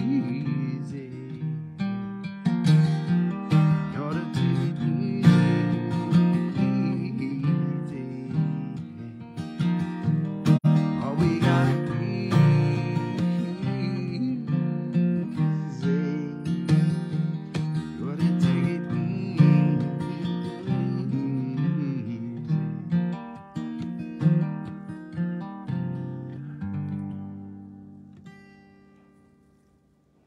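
Acoustic guitar strummed with a man singing over it. Near the end the song finishes and the last chord rings out and fades away.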